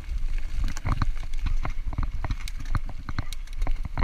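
Mountain bike clattering over a rough dirt trail: irregular sharp clicks and knocks from the frame, chain and fork as the tyres jolt over roots and bumps, over a steady low rumble.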